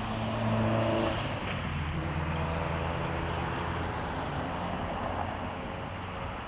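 Motor-vehicle engines in street traffic at an intersection: a car passing close at the start, followed by a steady low engine drone for several seconds.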